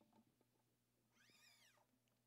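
Near silence in the church, with a few faint clicks. Just past a second in, one faint high-pitched sound rises and then falls in pitch.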